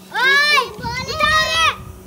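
A young child's voice: two high-pitched, drawn-out calls in a row, the words not made out.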